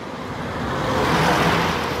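A truck passing close by on the highway, its tyre and engine noise swelling to a peak a little past the middle and then easing off slightly.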